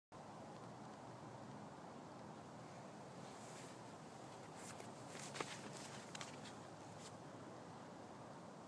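Faint outdoor background hiss, with a few soft clicks and rustles between about four and a half and seven seconds in.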